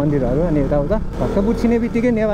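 A man talking over the steady low rumble of a motorcycle engine at low speed.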